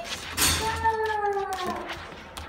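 A puppy whining: one long, high cry that falls slowly in pitch, after a brief rustle of movement as it is petted.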